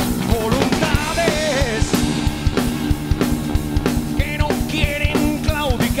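A rock power trio playing: electric guitar, bass and a drum kit keeping a steady beat, with a man singing over it.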